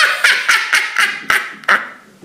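A woman laughing in short breathy bursts, about four a second, trailing off near the end.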